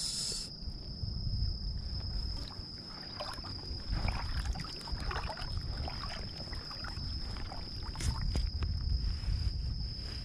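Water sloshing and splashing in irregular surges as an angler wades through shallow water toward the shore. A steady, high insect trill runs underneath.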